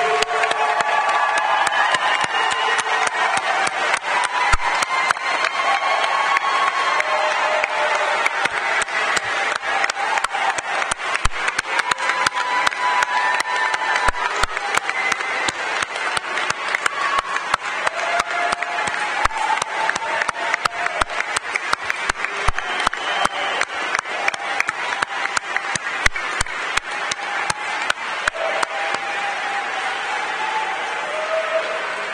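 Audience applauding: a dense, steady clatter of many hands clapping, with voices calling out and cheering over it.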